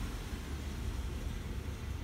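Outdoor beach background: a low, steady rumble with a faint hiss above it.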